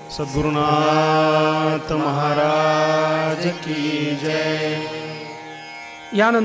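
A man's voice holding a long chanted devotional note over a steady drone, with a brief break about two seconds in and a fade near the end.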